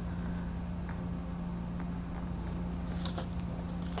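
Craft knife blade cutting through paper on a cutting mat: faint scratchy strokes, a little stronger about two and a half to three seconds in, over a steady low hum.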